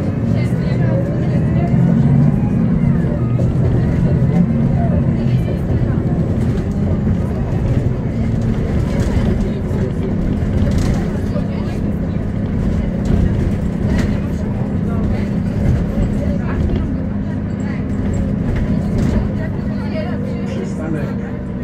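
Cabin sound of a 2007 Solaris Urbino 12 III city bus under way: its DAF PR183 diesel engine and ZF 6HP-504 automatic gearbox running. It is heaviest for the first few seconds, then settles to a steady drone.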